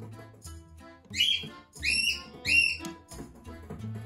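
Cockatiel giving three loud, short, high whistled chirps in quick succession about a second in, over background music with a steady beat.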